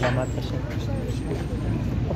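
Busy street ambience: people talking nearby over a steady low rumble of traffic.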